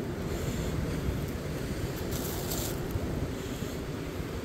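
Wind buffeting the microphone over a steady wash of ocean surf, with a brief scrape about two seconds in.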